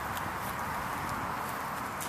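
A few light footsteps or ticks on pavement over a steady background hiss.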